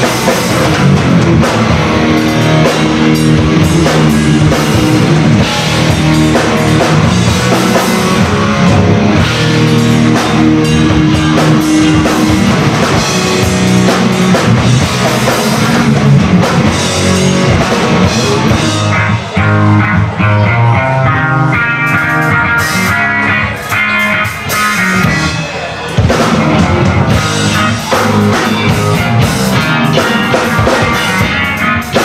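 Rock band playing live, with electric guitars, bass guitar and drum kit, picked up by a home camcorder's built-in microphone. In the second half the sound drops briefly several times.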